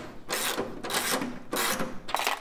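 Hand ratchet wrench clicking in short back-and-forth strokes, three rasping runs about two-thirds of a second apart, as a bolt on the firewall is turned.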